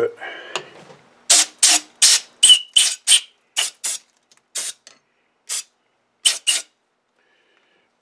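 About a dozen short, sharp scraping strokes on metal, unevenly spaced and starting about a second in, as the raised burrs are cleaned off the face of a freshly tapped hole in a small metal part.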